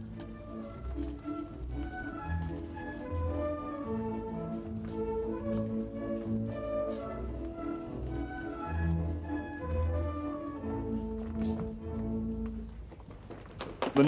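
Orchestral ballroom dance music playing, a melody over bass notes, dying away shortly before the end.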